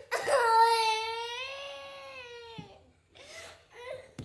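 A young child's loud, drawn-out wail, one high, steady, unbroken cry lasting about two and a half seconds, then a few fainter whimpering sounds.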